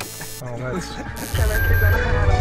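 Background music with a heavy bass beat kicking in about two-thirds of the way through, after two short whooshing noise bursts, with a voice heard briefly before it.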